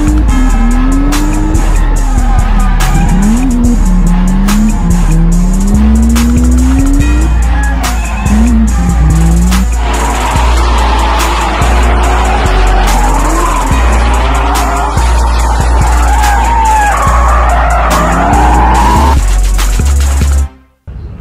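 Drift car engine revving up and down through a slide, with tyre squeal, under hip-hop music with a heavy bass line. From about halfway through, the tyre noise gets louder and denser.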